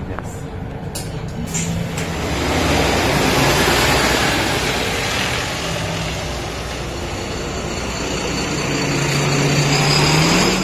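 MAN NL323F city bus with its D2066 diesel engine pulling away and driving off, the engine and road noise swelling to their loudest a few seconds in, then easing. A few clicks about a second in, and near the end a second bus engine close by runs up, its note rising.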